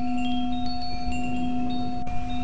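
Sound-healing background music: a steady low drone with scattered high wind-chime tinkles over it.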